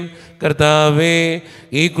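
A man's voice chanting a Malayalam Qurbana prayer: after a brief pause, one phrase is held on a steady pitch, and a new phrase begins near the end.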